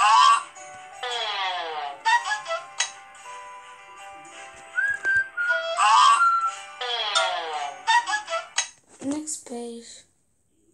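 Playful cartoon background music from an animated children's story app, with held notes, a few whistle-like tones and falling slides in pitch about a second in and again about seven seconds in. Short lower voice-like sounds come near the end.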